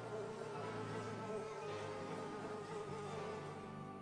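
A fly buzzing as a cartoon sound effect: a wavering drone that fades out near the end, over faint background music.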